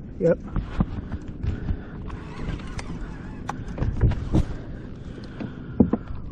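Water splashing and lapping against a kayak hull, with scattered clicks and knocks of gear being handled on board.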